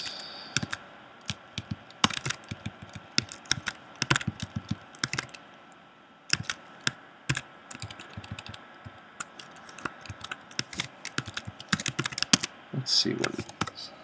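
Typing on a computer keyboard: irregular runs of quick keystrokes broken by short pauses.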